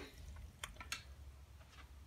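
A few faint small clicks and drips as coins settle into a dish of vinegar and salt water, over a faint low hum.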